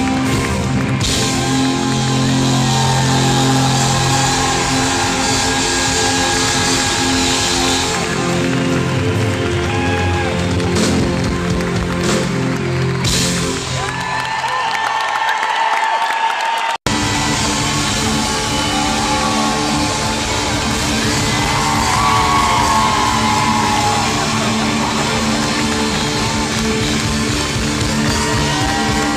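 Live rock band playing in a large arena, heard from among the audience, with drums and guitar. A little over halfway through, the sound drops out for an instant at an edit. After it, music continues with the crowd cheering and whooping.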